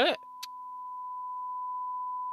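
Television off-air test tone: a single steady beep-like pitch under a colour-bar test card, swelling slowly in level, with a brief click about half a second in.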